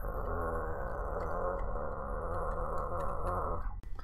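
A deep, drawn-out growling groan in the manner of Frankenstein's monster: one long low call that starts suddenly and cuts off just before speech resumes.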